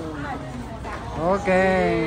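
Speech only: a man and others talking in Vietnamese, with a louder voice starting a little past one second in.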